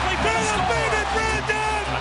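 Excited men's voices shouting over a low music bed, as a touchdown is scored.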